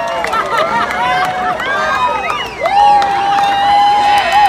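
Crowd cheering, whooping and shouting, many voices overlapping, with one long held call near the end.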